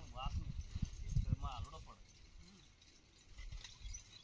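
Wind buffeting the microphone in uneven low rumbles through the first two seconds, with two short calls of a voice, then a quieter stretch of faint outdoor noise.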